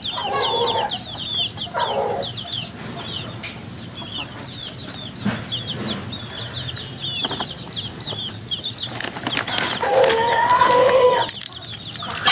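Chicks peeping rapidly and continuously, with a couple of lower clucks from the frizzle hen in the first two seconds. Near the end comes one longer, steady call lasting about a second.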